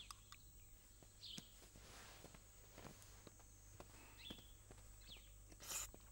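Near silence at a meal: faint scattered taps and clicks of chopsticks and porcelain bowls, a few faint short high chirps, and a brief rustle near the end.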